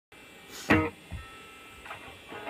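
Electric guitar through an amp playing loose chords before the song: one short, loud chord about two-thirds of a second in, then a couple of quieter notes.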